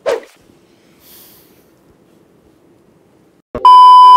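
Television colour-bars test tone used as a transition effect: a click about three and a half seconds in, then a loud, steady, high beep.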